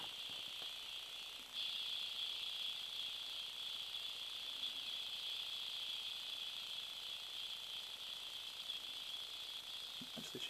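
Music leaking from the cheap bundled earbuds of a clone iPod Shuffle micro SD MP3 player, heard only as a thin, tinny treble with no bass. It gets louder about a second and a half in.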